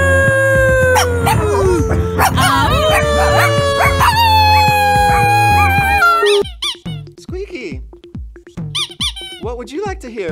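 A small dog howling along with music in long, slowly falling howls over a steady beat. This cuts off about six seconds in, and short squeaky chirps over a slow pulsing beat follow.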